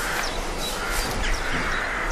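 Birds calling, with a crow cawing.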